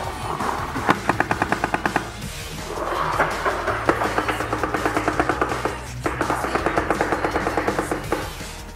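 Electronic paintball marker firing in rapid strings of about a dozen shots a second: one short string about a second in, then two longer strings from about three and a half seconds to near the end, with a brief break at about six seconds.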